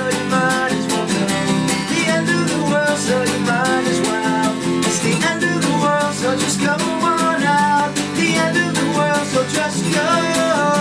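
Acoustic guitar strummed continuously while a man sings along, performed live.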